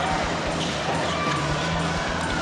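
Indoor basketball game sound: a steady crowd murmur with a basketball bouncing on the hardwood court.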